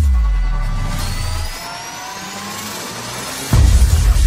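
Cinematic logo-intro sound design: a deep boom that slowly fades, then a synthesized riser of several tones gliding upward, cut off by a second heavy low hit near the end.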